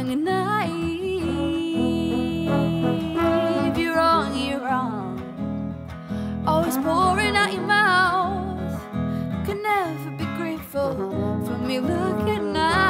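Live music: a strummed acoustic guitar with a woman singing and a trombone playing along, the melody lines held with vibrato.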